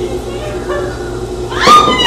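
A loud, high, meow-like cry near the end that sweeps sharply up in pitch and runs straight on into a long, high, wavering call. Before it there are only faint, scattered voice-like sounds.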